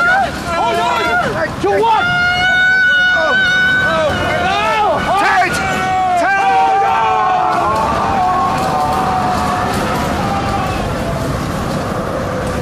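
People screaming and wailing in terror, with long held shrieks and sliding cries, over a loud rushing wind that thickens in the second half as the cries fade into it.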